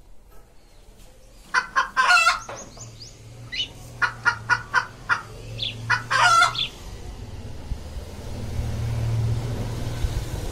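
Chickens clucking and a rooster crowing, a run of short calls with two louder crows, from about a second and a half in until about six and a half seconds. Near the end a low steady hum rises.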